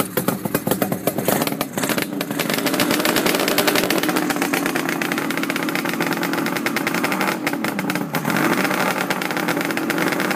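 Suzuki GT750 liquid-cooled two-stroke triple running a minute after a cold start, with its chokes just turned off. It idles choppy and uneven at first, then about two to three seconds in the revs pick up and settle into a steadier note. Near the end there is a brief dip and recovery in pitch.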